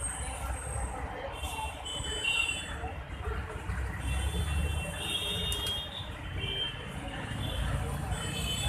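Outdoor background noise: a steady low rumble like distant traffic, with short high-pitched chirps or calls breaking in several times.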